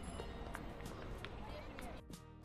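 Outdoor urban ambience of a busy pedestrian plaza: indistinct voices of passers-by with faint background music and a few light clicks.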